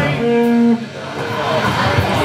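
Live rock band with electric guitars. A held note stops abruptly about three quarters of a second in, and quieter, untidy ringing guitar sound follows.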